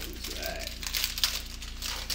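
Foil wrapper of a Pokémon card booster pack crinkling as it is handled and opened: a dense crackle of small sharp ticks.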